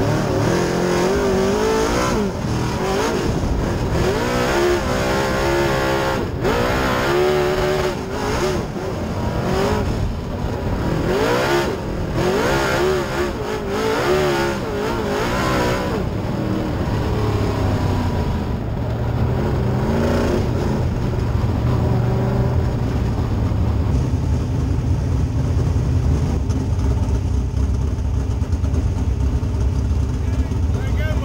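Dirt Super Late Model race car's V8 engine heard from inside the cockpit, its pitch rising and falling in repeated throttle blips for about the first half. It then settles into a lower, steady rumble as the car rolls slowly.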